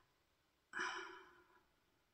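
A woman sighs once, a breathy exhale with a faint voice in it, about three-quarters of a second in and fading out within a second; the rest is near silence.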